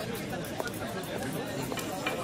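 Indistinct chatter of several people talking at once, a steady babble of voices with no clear words.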